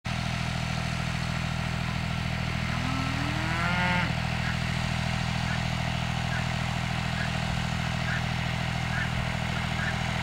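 Massey Ferguson tractor engine idling steadily, with a single cow moo rising in pitch about three seconds in.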